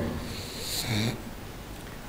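A man's short breath with a brief low hum into a lectern microphone, about a second in, between stretches of quiet room tone.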